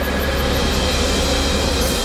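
Cartoon sound effect of a swarm of robot insects flying: a steady, dense mechanical buzzing hum with a hiss above it.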